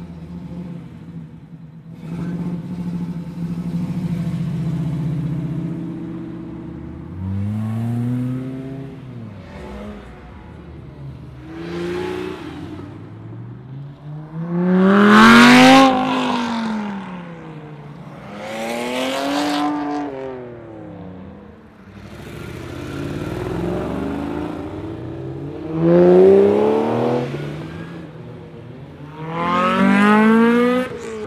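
A string of sports cars accelerating past one after another, each engine rising in pitch as it revs and then falling away as it goes by. A low, steady engine rumble fills the first several seconds. The loudest pass, about halfway through, is a Lamborghini convertible.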